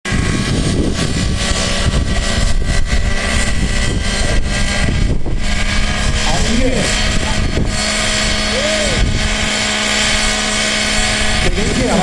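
Nitro-engined radio-controlled model helicopter running steadily, its glow engine and rotors holding a near-constant pitch. A few brief voices sound over it in the middle and near the end.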